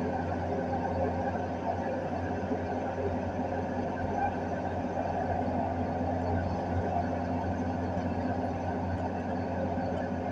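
Komatsu hydraulic excavator's diesel engine running steadily, heard from inside the operator's cab.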